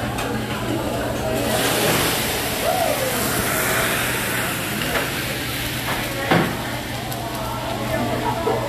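Food and oil sizzling on a hot teppanyaki griddle, with a loud rushing hiss that rises about a second and a half in as a fire flare-up goes up from the grill. A single sharp knock comes near the end.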